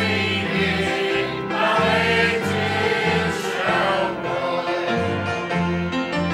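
Church choir of men and women singing a gospel hymn together, with a steady low accompaniment line beneath the voices.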